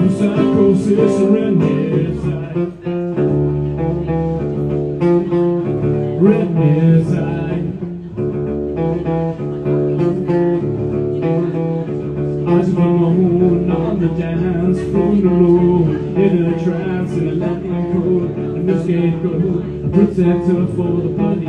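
Live solo music: an acoustic guitar strummed steadily through chord changes, with a male voice singing over it at times.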